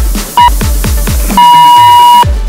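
Electronic dance music with a steady kick-drum beat, overlaid by interval-timer beeps: a short beep about half a second in, then a long beep starting near the end. The beeps are a countdown, and the long beep signals the end of the exercise interval.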